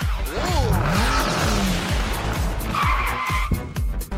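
Animated channel ident jingle: electronic music with a steady beat under swooping sound effects that glide up and down in pitch, and a short high tone about three seconds in.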